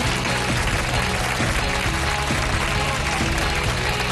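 Studio audience applause under television talk-show music with a heavy low end.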